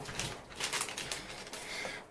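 Rustling handling noise, a run of short scratchy sounds, as a paper receipt is picked up from the floor and handled.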